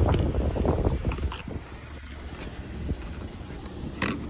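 Wind buffeting the microphone: a low, steady rumble, with a few faint clicks.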